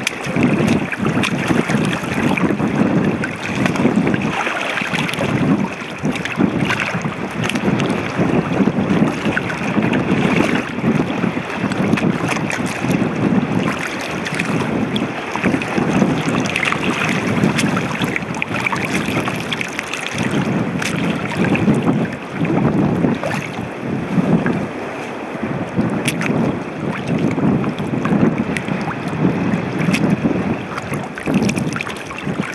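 Leather sneakers stepping and sloshing through shallow seawater over rock, with a splash roughly every second as the feet lift and land, and wind on the microphone.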